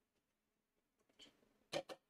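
Mostly near silence, broken by a brief faint scrape about a second in and two sharp clicks close together near the end: painting tools being handled at the desk while a brush is cleaned.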